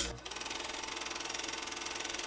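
A steady, rapid mechanical clatter of evenly spaced clicks at an even level, opened by one short sharp click.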